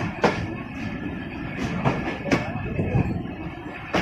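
Passenger train running along a station platform, heard from a coach: a steady rumble with a faint high whine and several sharp wheel clacks over the rail joints at uneven intervals.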